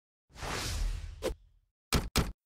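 Whoosh transition sound effect lasting about a second, marking a slide change, followed by a short sharp click and then two quick clicks near the end.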